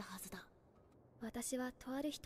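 Only speech: quiet, soft-spoken dialogue in two short phrases, separated by a near-silent pause of about a second.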